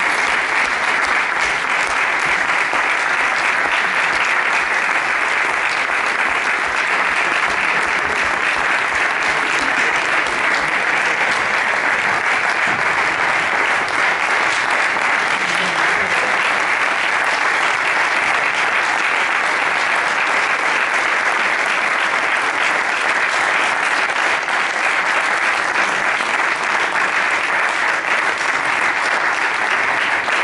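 Audience applauding steadily, many hands clapping in a long, unbroken ovation.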